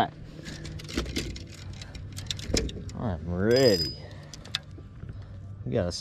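Fishing rods and tackle being handled on a boat deck, with many sharp clicks and knocks over a steady low hum. A short voice sound rises and falls about three seconds in.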